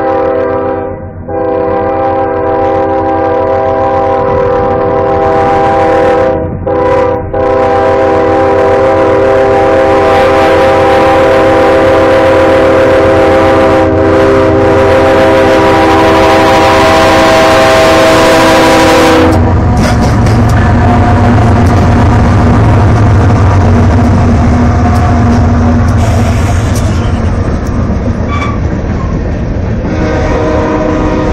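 Diesel freight locomotive's air horn sounding the level-crossing pattern as it approaches: a long blast, a second long blast, a short one, then a final long blast held until about nineteen seconds in, when it cuts off. The GE ES44AC locomotive and its freight cars then rumble loudly past, with wheels clacking over the rail joints.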